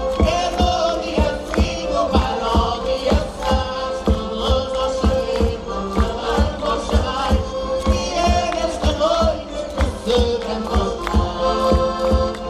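Live folk group performing a traditional Madeiran Epiphany song (cantar os reis): voices and instruments over a steady beat of about three strikes a second, with a held note underneath.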